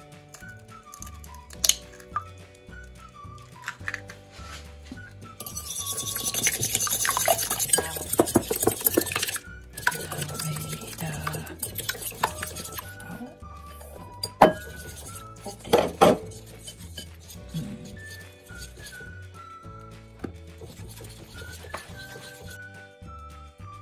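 An egg cracked on a glass bowl near the start. A small wire whisk then beats the egg rapidly against the glass for about four seconds, followed by a few sharp clinks of metal on glass, with background music playing.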